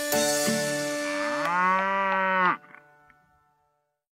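A cow's single long moo for a cartoon cow, beginning about a second and a half in and breaking off sharply, over the last held notes of a children's song.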